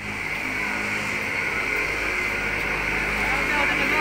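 Steady mechanical hum with a hiss over it, from a kiddie carousel ride turning.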